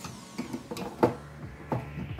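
A few small knocks and clicks from a doll being handled against a toy dollhouse, the sharpest about a second in.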